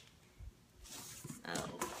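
Faint rustling of bubble wrap and cardboard box flaps as hands handle an opened shipping box, after a soft low bump about half a second in.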